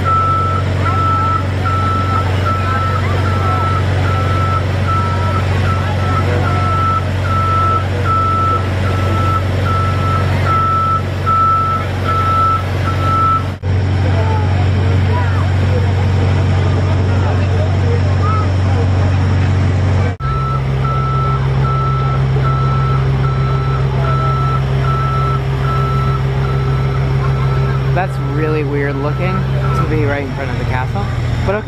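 Scissor lift's motion alarm beeping at a steady, even pace over a loud low engine drone. The beeping stops about halfway through and starts again some seven seconds later, when the drone shifts to a different pitch.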